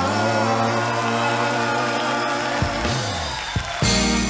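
Live soul band music: a long held chord, then a low bass note slides up and back down, and the drums come in with sharp hits near the end.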